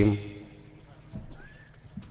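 A man's chanted Arabic recitation ends on a long held note, then a pause of faint low background noise with two faint knocks, about a second in and near the end.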